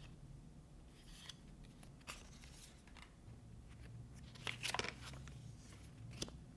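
Paper inserts from an iPhone box rustling and crinkling as they are handled and pulled apart, in short scratchy bursts, with a louder cluster about three-quarters of the way through.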